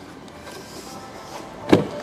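Rear door of a 2002 Range Rover Vogue being unlatched and opened: quiet room tone, then a single sharp latch click near the end.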